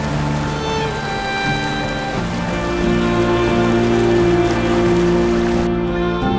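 Soft background music with long held notes over the steady rush of flowing spring meltwater; the water sound stops shortly before the end.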